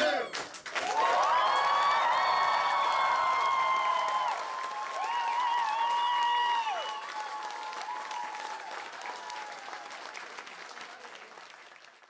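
Audience applauding and cheering after the song ends, with high held whoops over the clapping in the first half; the applause then thins and fades away.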